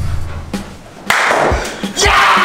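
Edited-in music and sound effects: a low droning tone with a thud, then a sudden loud burst about a second in.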